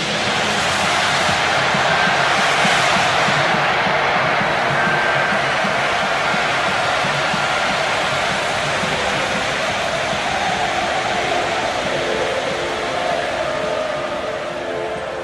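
Stage pyrotechnic fountains and jets firing together make a loud, steady hiss. It surges in the first seconds and slowly eases, with sustained music notes underneath.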